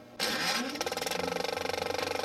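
An engine-like mechanical sound that starts about a quarter-second in and runs with a rapid, even rattling pulse. Its pitch rises during the first half-second.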